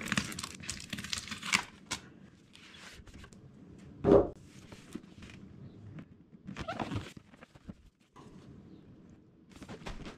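Cardboard packaging being handled as a box is opened: scraping and rubbing of cardboard as the sleeve is worked off, with one loud thump about four seconds in and more scraping near seven seconds.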